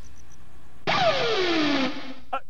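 A short transition sound effect for a station logo bumper: about a second in, a sudden swoop with several pitches sliding steadily down together over a hiss. It lasts about a second.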